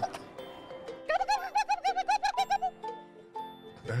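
A woman's vocal turkey impression: a rapid, high-pitched warbling gobble about a second and a half long, starting about a second in.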